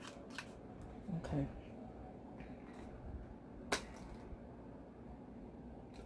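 Faint clicks and handling of a small plastic BeanBoozled spinner being flicked and turned in the hands, with one sharper click a little past the middle.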